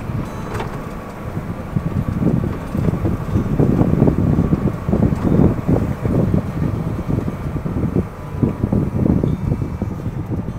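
Ford Bronco Raptor driving along a sandy dirt trail: a low, uneven rumble from the engine, tyres and bumps in the track, getting louder about two seconds in.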